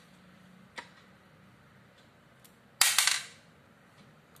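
A single loud, sharp crack about three seconds in that dies away within half a second, after a faint click about a second in.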